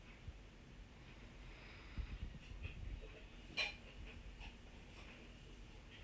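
Harira soup simmering in a large stainless steel pot on a gas burner: faint, scattered small pops of bubbling, clearest about two seconds in and again a little later, over a low steady rumble.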